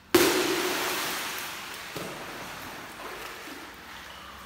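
A person plunging into a swimming pool: one loud splash just after the start, then churning water dying away over about three seconds, with a smaller splash about two seconds in.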